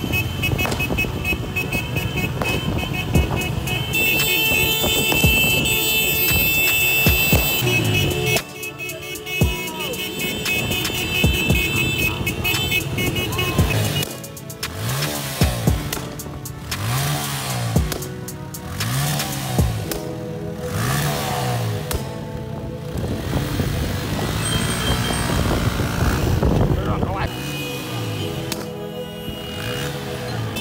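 Motorcycle engines running and being revved over and over, rising and falling in pitch, amid music and voices.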